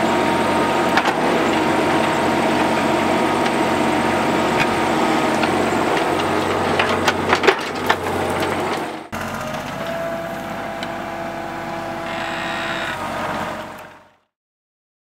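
Compact excavator's diesel engine running steadily while the bucket digs, with scattered clicks and knocks of rock and dirt. About nine seconds in the sound cuts to a quieter, steady machine hum with a faint whine, which fades out at the end.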